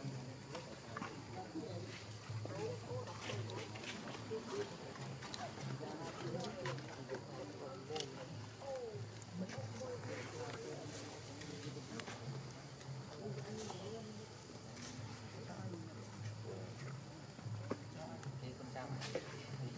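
Many soft, wavering macaque calls overlap throughout, with scattered faint clicks and a steady low hum underneath.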